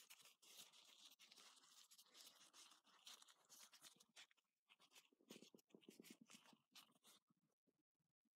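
Faint rustling and crinkling of a paper towel wiping a small glass lens clean, with small handling clicks, dying away near the end.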